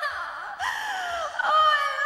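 A woman moaning in a recorded vocal, two long falling moans, the first starting about half a second in and the second about one and a half seconds in, over a faint low regular beat.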